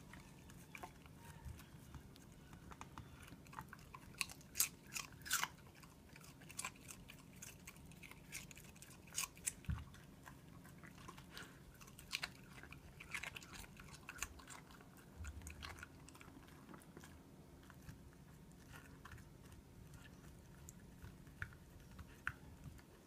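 Smooth miniature dachshund chewing and crunching lettuce leaves and cucumber, faint, in irregular runs of sharp crunches that are densest about four to six seconds in and again around nine and thirteen seconds.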